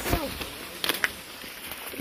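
Quiet rustling of maize leaves and stalks as people push through a cornfield on foot, with a faint distant voice at the very start and a couple of sharp clicks just under a second in.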